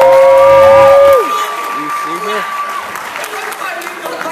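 Audience cheering: a loud, long held "woo!" that stops about a second in, overlapped by a second, higher-pitched held whoop lasting nearly three seconds, over applause.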